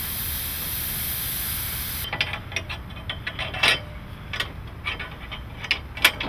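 Steady hiss of a hose spraying water onto infield clay, cutting off suddenly about two seconds in; after that, scattered sharp clicks and knocks.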